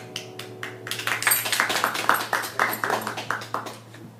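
A small audience clapping as the band's final chord rings out and fades; the applause begins sparsely, swells about a second in and dies away near the end.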